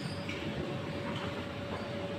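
Steady background din of a large indoor play centre, with a constant faint hum running through it and a few faint ticks.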